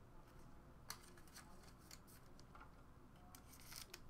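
Near silence with a few faint clicks from trading cards being handled and set down, one about a second in and a cluster near the end.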